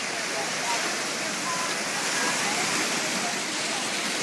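Shallow surf washing up the beach and around a stranded shark, a steady rushing hiss of breaking, foaming water. Faint voices of people can be heard behind it.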